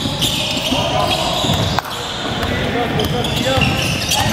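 Basketball game sounds on a hardwood gym court: a ball being dribbled, players' feet on the floor and indistinct voices of players and onlookers. A sharp click a little under two seconds in.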